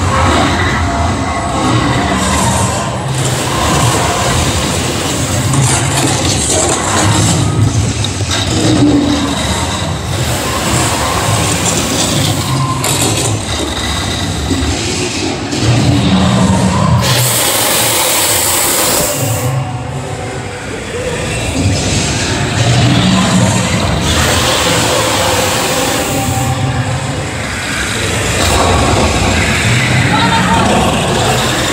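The Harry Potter and the Forbidden Journey ride in full flow: a dense mix of soundtrack music and effects with a low, pulsing rumble. About halfway through, a loud hiss lasts for roughly two seconds.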